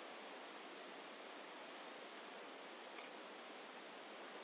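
Faint, steady hiss of quiet outdoor ambience at dawn, with a single brief click about three seconds in and a couple of faint, short high chirps.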